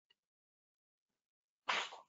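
Near silence, then near the end a sudden short burst of breath noise from a person close to a microphone, fading within about a third of a second.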